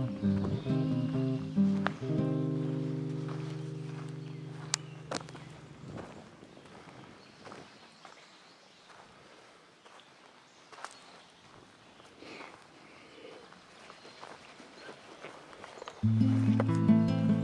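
Acoustic guitar music: a chord rings and fades away over the first six seconds. Then comes a quiet stretch with faint footsteps on a pine-needle trail.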